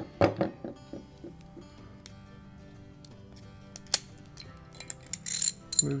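Steel parts of a Tokarev TT-33 pistol being handled during field-stripping: a sharp click about four seconds in and a brief metallic rattle of the slide and recoil spring just before the end, over soft background music.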